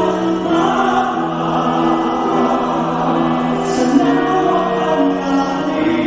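A male solo singer on a microphone backed by a mixed choir, the voices holding long sustained notes.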